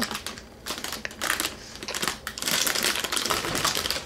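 Crinkling and crackling of a motherboard's anti-static plastic bag as it is opened and handled: rapid crackles, sparse at first and dense over the last half.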